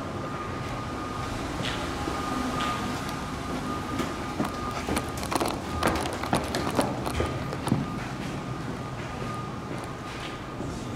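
Footsteps and phone-handling noise from someone walking and climbing wooden stairs. A scattering of short knocks and taps comes through most thickly in the middle seconds, over a steady background hiss.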